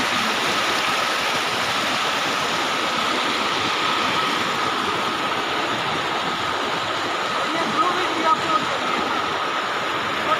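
Fast mountain stream rushing over boulders: a steady rush of white water.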